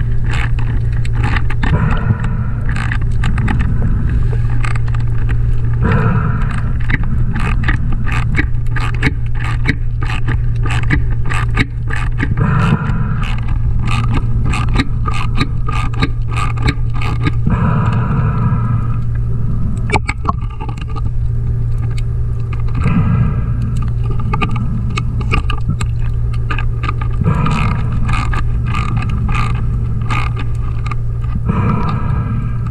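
Underwater sound: a steady low hum throughout, a diver's regulator breath every five seconds or so, and many small clicks and scrapes of a hand tool working on a metal fitting.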